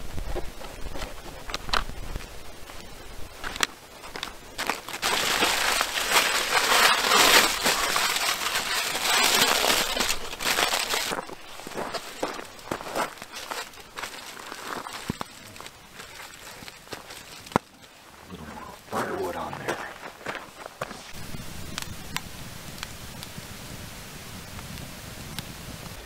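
Aluminium foil crinkling and rustling for several seconds as a stuffed French bread loaf is wrapped, among scattered clicks and knocks of handling on a wooden table.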